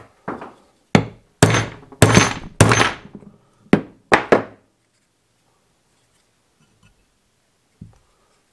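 Hammer blows on a socket, driving a 3D-printed plastic gear onto a keyed motor shaft: about nine sharp strikes, the loudest in the middle of the run, each with a short metallic ring.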